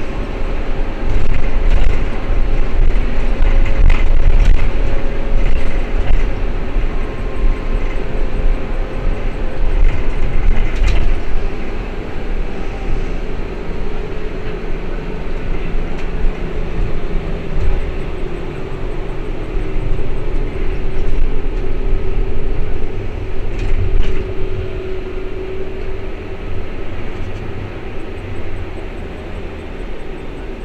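Ikarus 412 trolleybus heard from inside while under way: a steady low rumble of the ride, with a held humming tone over it. The rumble grows quieter in the second half.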